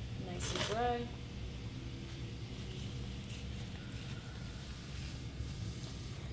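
A brief vocal sound under a second in, then a faint, steady rustle of a dry Kimwipe tissue being smoothed by hand over the glass face of a front-surface mirror.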